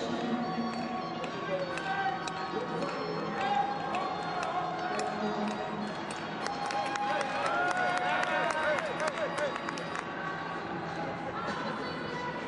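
Speed skating arena ambience: indistinct speech and music mixed with crowd noise. A run of sharp clicks comes through in the middle few seconds.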